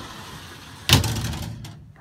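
A storage cabinet door in a camper being opened: a low rubbing for about a second, then one sharp knock that dies away.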